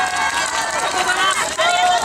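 Several high-pitched voices shouting and cheering at once, overlapping. The voices are of yosakoi dancers, just after their dance.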